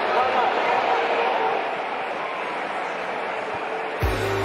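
Steady noise of a large football stadium crowd: many voices blending into a continuous din that eases slightly toward the end.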